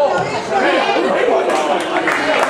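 Many voices talking and calling out at once, the chatter of players and spectators around a football pitch, with a single sharp knock right at the start.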